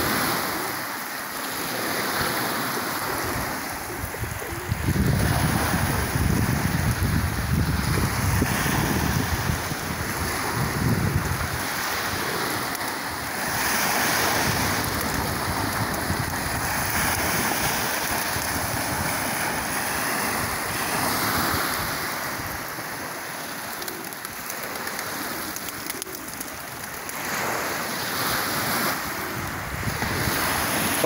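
Sea waves breaking and washing up a pebble beach, coming in repeated surges every several seconds. Wind buffets the microphone in a gust from about five to twelve seconds in.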